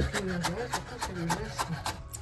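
Chef's knife mincing fresh ginger on a wooden cutting board: quick, even taps of the blade on the board, about five a second.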